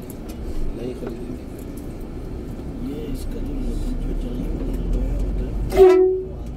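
Bus engine and road rumble heard from inside the cabin in slow traffic, with voices in the background. Just before the end comes a short, loud vehicle-horn blast, a single steady tone.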